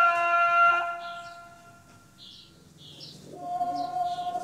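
A chanting male voice holds a long, steady note that fades away about two seconds in; in the quieter lull a few short bird chirps are heard, and another long held note begins near the end.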